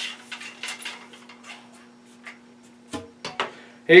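Ramrod pushing a solvent-wet cleaning patch back and forth down a muzzleloader's rifled bore: a run of quick scrapes and clicks that fades after about two seconds, then a couple of knocks near the end as the rod is worked out of the muzzle. A faint steady hum sits underneath.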